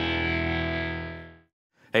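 Electric lap steel guitar tuned to open E, a held chord ringing on and fading away about a second and a half in.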